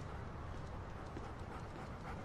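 Faint footsteps of a person and a dog walking on pavement, soft irregular ticks over a steady low background rumble.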